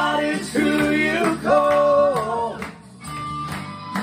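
Male voice singing a Christian worship song over guitar-led band accompaniment. The voice drops out about two and a half seconds in, leaving the instrumental accompaniment with a steady beat going into a guitar break.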